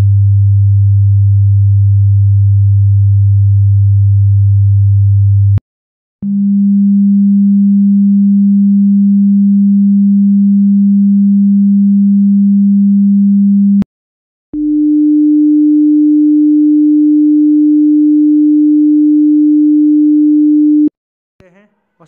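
Test tones from a Samsung phone's hidden Low Frequency Test, played in turn: a steady low hum at 100 Hz, then after a short break a 200 Hz tone, then a 300 Hz tone, each a pure single note held for several seconds. Each tone stops with a small click, and the pitch steps up from one tone to the next.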